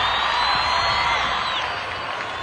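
A large crowd cheering, with a long high whistle-like tone above the noise that bends down about a second and a half in; the cheering slowly fades.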